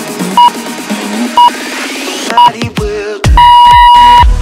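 Workout interval-timer beeps over background electronic music: three short beeps about a second apart, then one long, louder beep near the end, counting down the end of the exercise set into the rest break. The music builds with a rising sweep under the short beeps.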